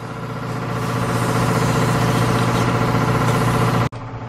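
A motor or engine running steadily, a constant humming drone with many even overtones that swells a little over the first second and breaks off abruptly just before the end.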